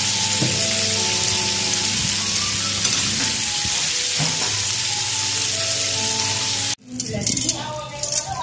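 Flour-coated chicken wings frying in hot oil in a pan, giving a loud, steady, dense sizzle. The sizzle stops abruptly about seven seconds in and gives way to quieter, irregular sizzling with a few clicks.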